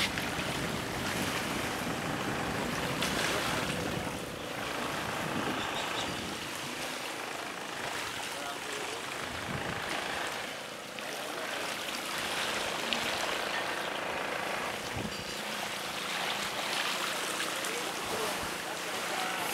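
Steady seaside ambience of small waves washing on a pebble shore, with the low hum of a distant boat engine and faint voices.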